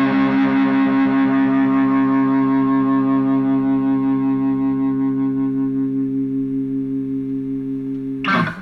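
Music: a single sustained chord on distorted electric guitar, held and ringing out while it slowly fades, as the song ends.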